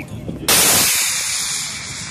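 Model rocket motor firing: a sudden loud rushing hiss starts about half a second in and fades away over the next second and a half.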